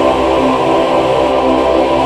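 Roland Verselab MV-1 preset synthesizer patches holding a sustained chord, with a low bass note underneath and no beat.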